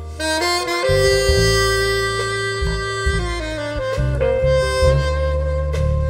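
Saxophone playing a slow melody of long held notes, stepping down in pitch about halfway through and then holding a new note, backed by a live band with electric bass.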